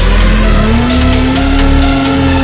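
Polaris snowmobile engine running and rising in pitch as it revs up over the first second or so, then holding steady. It is mixed under loud electronic music with a steady beat.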